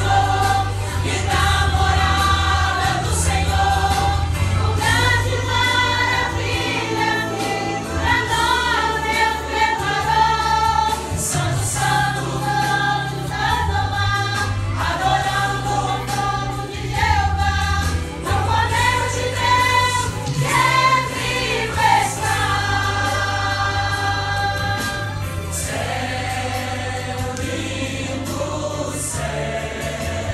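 A church choir of mostly women singing a hymn in several voices, led by a conductor, over sustained low accompaniment notes that change every second or two.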